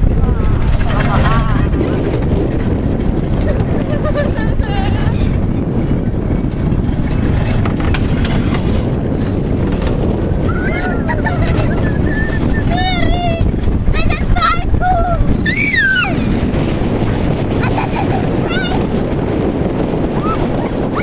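Steady wind rumble on the microphone of a moving amusement-ride car, with brief high-pitched squeals in the second half.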